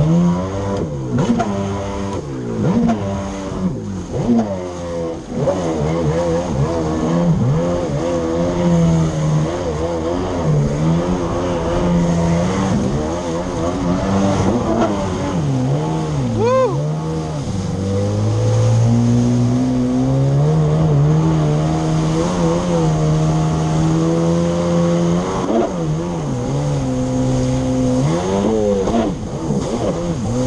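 Yamaha SuperJet stand-up jet ski engine running hard under throttle, its pitch rising and falling again and again as the throttle is worked, with a steadier run past the middle. Water spray hisses under it.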